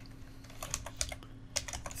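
Typing on a computer keyboard: a run of quick key presses beginning about half a second in, as a word is typed.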